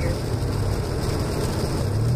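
Steady low drone of a car driving along a snow-covered road, heard from inside the cabin.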